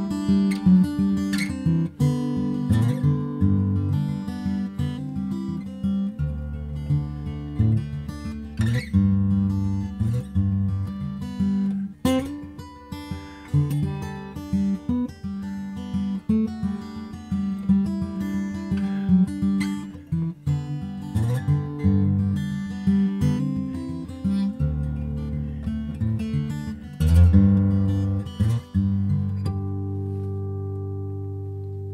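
Steel-string acoustic guitar in open G tuning playing a blues tune solo, with a moving bass under the higher melody notes. It closes on a chord left ringing.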